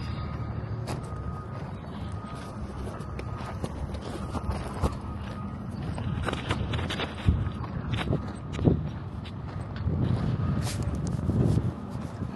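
Footsteps crunching irregularly on a gravel lot, with wind buffeting the microphone in a low steady rumble; two sharper steps stand out a little past the middle.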